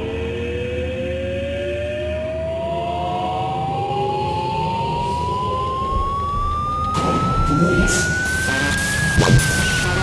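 Dubstep remix in a build-up: a single synth tone rising steadily in pitch, siren-like, over a sustained low bed. About seven seconds in, a noisy rush and sharp percussion hits come in, and the rising tone dips slightly near the end as the track heads into the drop.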